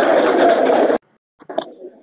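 Music that cuts off abruptly about a second in, followed by a moment of silence and then faint, low voice-like sounds.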